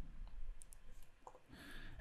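A few faint, short clicks from a computer mouse and keyboard in use, over low background hiss.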